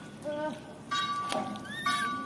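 Macaque calls: a short low call a quarter second in, then a rising squeal near the end, over a steady high tone that sounds twice.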